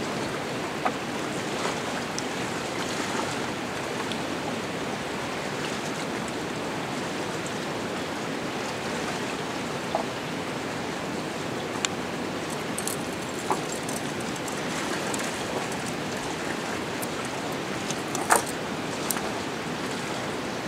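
Steady rushing of river water, with a few faint short clicks scattered through it, the clearest near the end.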